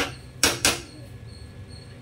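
Two quick knocks of a metal ladle against an aluminium cooking pot, close together about half a second in, then only faint room noise.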